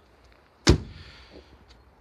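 A car bonnet slammed shut on a 2005 Lexus IS250: a single sharp, heavy thud well under a second in, dying away quickly.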